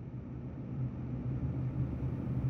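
A steady low rumble of background hum, with no distinct events.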